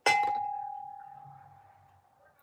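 A single clink of a cobalt-blue glass double candle holder being knocked, followed by one clear ringing tone that fades away over about two seconds.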